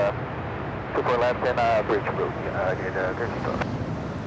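Steady low jet rumble from a four-engined Airbus A380 on final approach, heard from the ground, with a voice talking over it about a second in.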